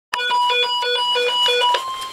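Weather radio alert tone for a National Weather Service warning. A lower beep pulses on and off several times a second over a steady high tone. Shortly before the end the beeping stops and the steady tone carries on alone.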